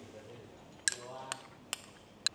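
Eating utensil clinking sharply against a dish three times, about a second in and twice more over the next second.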